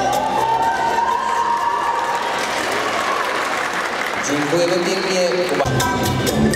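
Audience applauding as the Latin dance music fades out, with a short spoken voice near the end. The next dance's music, with percussion, starts suddenly just before the end.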